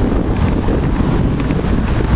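Wind buffeting the microphone: a steady, loud low rumble of noise.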